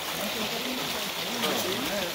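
A stream running steadily over rocks, with several men's voices talking in the background.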